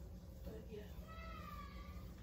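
A single faint, drawn-out meow, about a second long, sliding slightly down in pitch.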